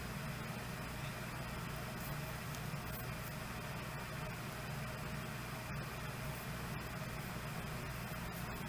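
Steady hiss with a low hum underneath: the background noise of an open computer microphone on a video call, with no one speaking.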